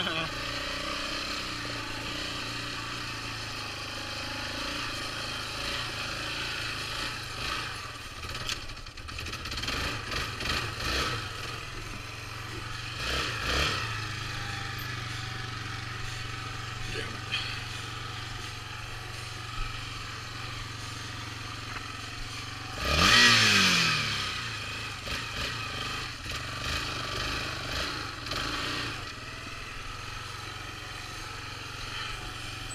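Yamaha Raptor 350 ATV's single-cylinder four-stroke engine idling steadily, with a few knocks in the first half and one short loud rev about three-quarters of the way through.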